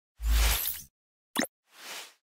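Logo-reveal sound effects: a whoosh over a deep bass hit, a short sharp pop about a second later, then a softer whoosh that swells and fades.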